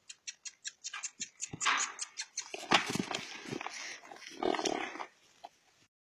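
Short, even clicks about five a second, giving way about a second and a half in to a stretch of rustling and thuds as a horse and a small dog move about close by on dry grass.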